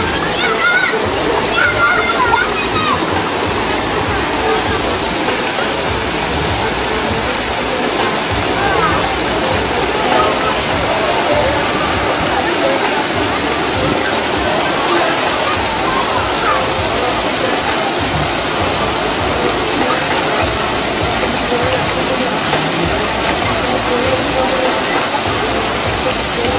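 Steady rushing and splashing of water at a water park, with faint voices of people talking and calling over it, clearest in the first few seconds.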